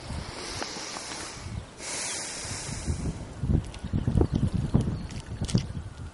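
Handling noise from jacket fabric rubbing over the camera microphone. A louder rush of rubbing comes about two seconds in, then irregular low thuds and knocks.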